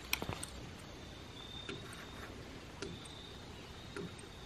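Hydraulic ram pump running with its delivery pipe closed, its waste valve giving a few faint clicks as it cycles and drains the drive water from the bucket.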